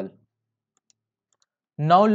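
A man's voice trails off, then near silence with a faint single click about a second in, from a computer mouse, before his voice starts again near the end.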